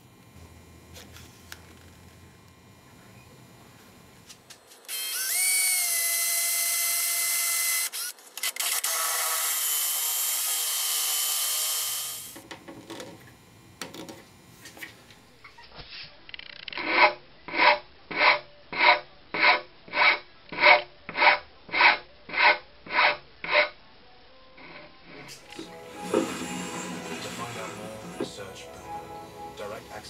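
A power drill boring into the cherry door frame for a dowel peg: the motor spins up with a rising whine about five seconds in, runs with one short break, and stops about twelve seconds in. Later come about a dozen even hand strokes on the wood, roughly two a second.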